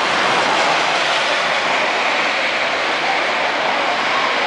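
Very heavy rain pouring down and splashing on wet paving stones and road, a loud, steady wash of noise.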